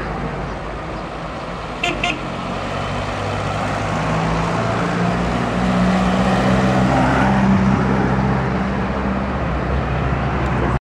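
Vintage Mathis car's engine running as it drives past at low speed, growing louder to a peak a few seconds before the end. Two short horn toots about two seconds in.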